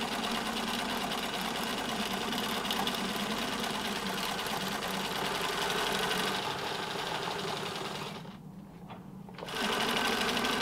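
Pfaff 362 sewing machine running steadily as it zigzag-stitches a webbing edge onto sailcloth. About eight seconds in it stops for roughly a second, then starts sewing again.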